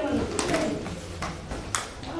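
A few sharp slaps of boxing gloves landing during sparring, about four spread over the two seconds, with faint voices in the room.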